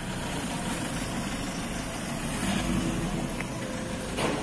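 Toyota Hiace Commuter's 2.5-litre turbodiesel idling steadily.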